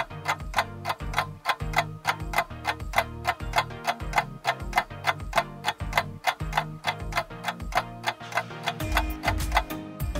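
Countdown timer sound effect: quick, even clock ticks, about four a second, over background music with low held notes. A heavier bass note comes in near the end.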